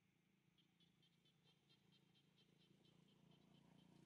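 Near silence, with a faint, rapid series of short high chirps, about six a second, starting about half a second in: an insect calling.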